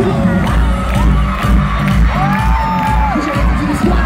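Live pop music with a heavy bass beat over a stadium sound system, under a crowd screaming and cheering. One long high-pitched scream rises and falls about two seconds in.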